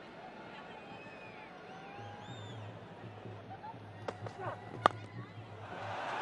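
Faint stadium crowd noise over a steady low hum, then near the end a single sharp crack of a cricket bat striking the ball, with a smaller knock just before it.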